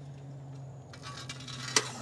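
Light clicks and rattles from a folding electric trike's metal frame and wire baskets as a rider settles onto its seat, with one sharp click near the end, over a steady low hum.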